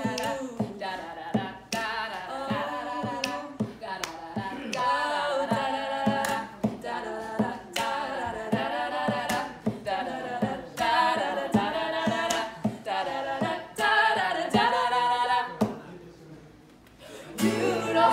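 Voices singing a song in harmony over a Fender acoustic guitar, with regular sharp percussive hits on the beat. The music drops to a short lull near the end, then comes back in louder with strummed guitar.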